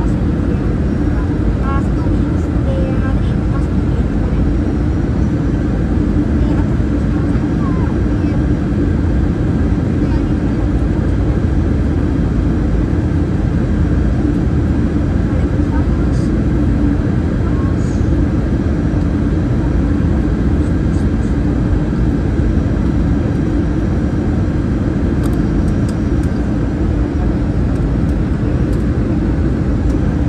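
Airbus A320 cabin noise from a window seat beside the wing: the steady rumble of the engines and rushing air during the approach to landing, with a low hum running under it.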